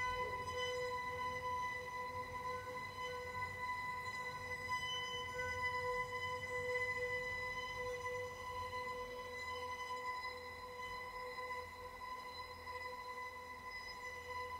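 Electric string quartet holding one long sustained drone, a single steady pitch with bright overtones that does not change, getting slightly quieter towards the end.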